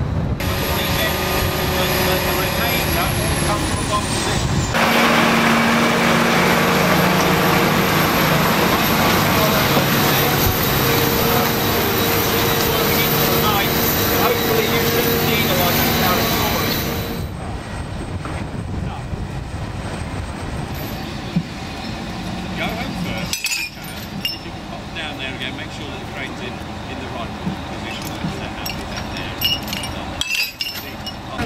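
Heavy diesel machinery at a crane site, the mobile crane and trucks, running steadily, with voices faint in the background. The sound jumps abruptly about five, seventeen and twenty-three seconds in, loudest in the middle stretch.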